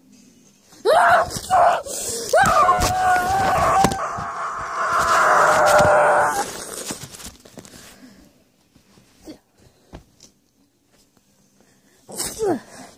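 A young person's voice yelling, then screaming in one long held cry from about two to six and a half seconds in, with knocks and rustling as the camera is bumped and tipped over. After that there are only a few faint knocks.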